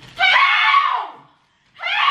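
A woman screaming: a high-pitched shriek of about a second that falls in pitch as it ends, then a second shriek starting near the end.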